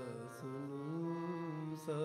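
Sikh kirtan: a ragi's voice holding long notes over a steady harmonium. The melody changes note about half a second in and again near the end.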